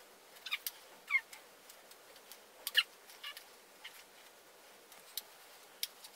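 Faint clicks and rustles of hair straighteners being clamped and drawn through hair, with two short squeaks, one falling in pitch about a second in and a louder one near the middle.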